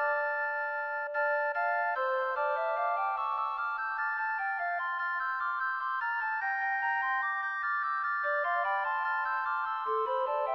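Six-part recorder consort playing a polyphonic fantasia: several held, overlapping lines that move in steady note changes, with no pause.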